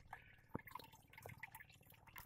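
Near silence: faint water against a boat's hull, with one sharp faint click about half a second in.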